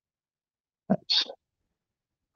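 A single short spoken word, "nice", about a second in, ending in a hissy "s"; otherwise silence.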